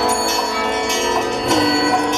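Loud live rock band playing: held, ringing electric guitar notes that slide in pitch now and then, with drum and cymbal hits about every half second.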